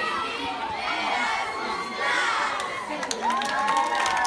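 A large group of schoolchildren cheering and shouting together, many voices at once, swelling into one long held cheer near the end. Scattered hand claps join in during the second half.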